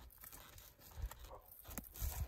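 Faint hoofbeats of a saddled horse walking on dirt: a few soft thuds and scuffs, about a second in and again near the end.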